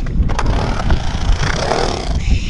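Skateboard wheels rolling and carving on a concrete bowl, a steady rumble with a couple of short clicks about a third of a second in.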